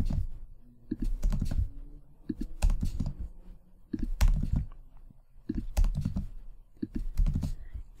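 Typing on a computer keyboard: short bursts of key clicks, about six of them, with pauses of a second or so between.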